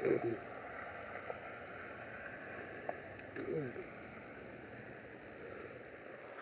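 Quiet outdoor background hiss with a few faint clicks. A brief falling, voice-like sound comes about three and a half seconds in.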